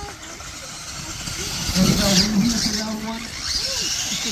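Radio-controlled monster trucks launching and racing on a dirt track: motors and tyres on dirt build to their loudest about two seconds in. A voice calls out over them.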